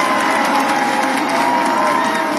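A large crowd cheering and applauding, steady throughout.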